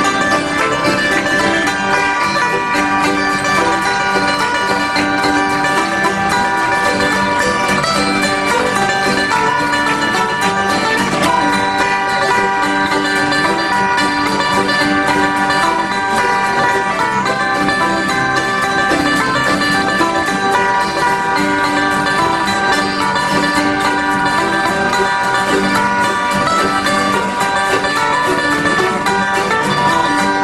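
Acoustic bluegrass band playing a hymn tune: several acoustic guitars with a small ten-string instrument strung with banjo strings, in continuous ensemble music.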